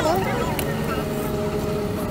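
Steady low rumble of a motor vehicle running close by, with a brief voice at the very start.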